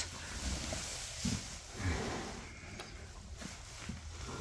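A foaling mare straining in labour: two brief, low grunts about a second and two seconds in.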